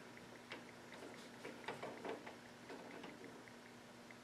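Watts hydronic manifold flow indicator being unscrewed by hand from the stainless steel manifold: faint, irregular light clicks and ticks as its threads turn and it comes free.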